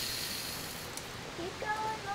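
Steady hiss of water running from a garden hose through a self-sealing water-balloon filler, cutting off abruptly about a second in; a short drawn-out voice follows near the end.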